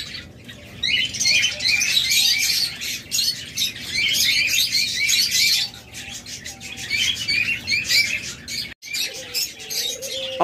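A dense chorus of quick, high chirps from many caged small birds calling at once, thinning briefly about six seconds in and cutting out for an instant near the end.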